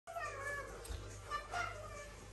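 A cat meowing faintly, twice: a longer, slightly falling call and then a short one.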